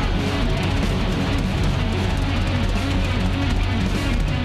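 Live rock band playing at full volume: electric guitar over bass guitar and drums, with cymbal crashes and a steady driving beat.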